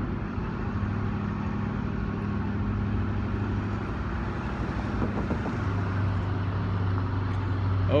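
Downtown street traffic: a steady low engine hum from vehicles, under a continuous wash of road noise.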